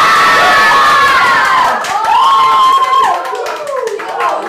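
A group of people cheering and shrieking with high voices, several drawn-out cries overlapping, loud for about three seconds and easing somewhat near the end.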